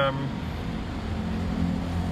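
A steady low background rumble with a faint hum.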